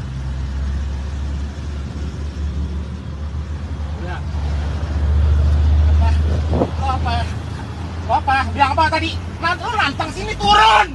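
Low, steady rumble of a car engine and road traffic heard from inside a car cabin, swelling around the middle. Men's voices break in during the second half.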